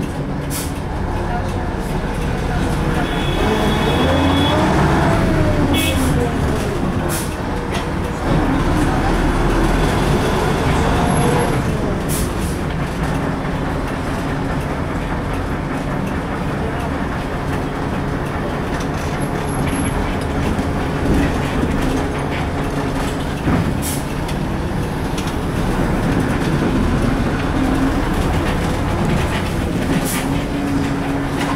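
Inside a LAZ 695T on the move, heard from the driver's cab: a steady running rumble and road noise with scattered rattles and knocks. The drive's pitch rises and falls twice in the first half as it pulls away and slows in traffic.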